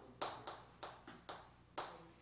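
Chalk tapping against a chalkboard with each stroke of handwriting, about five sharp taps at an uneven rhythm.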